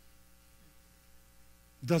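Faint steady electrical mains hum in a pause of speech, with a man's voice returning near the end.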